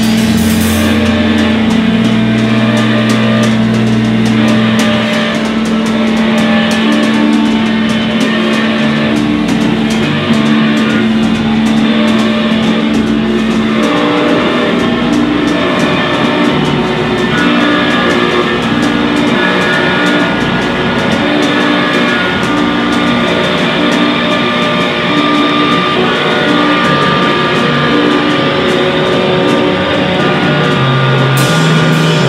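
Loud live noise music: distorted electric guitars and electronics make a dense, droning wall of sound with held tones, over drums. A low held tone drops away about halfway through.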